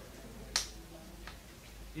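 Two short clicks over quiet room noise: a sharp one about half a second in and a fainter one just past a second.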